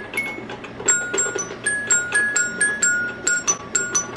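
The colored xylophone bars of a Little Tikes toy piano tapped with the fingertips: a quick, uneven string of short ringing plinks on a few different notes, sparse at first and then rapid from about a second in.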